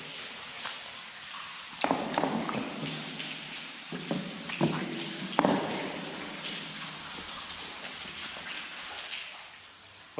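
Water dripping inside a tunnel: a steady wet hiss with several sharper drips or splashes, mostly between about two and five and a half seconds in.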